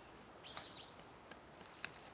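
Faint, high bird chirps and a thin whistled note, with one sharp click near the end.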